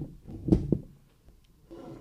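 Two dull thumps on a table microphone, one at the start and one about half a second in, followed by quiet room tone.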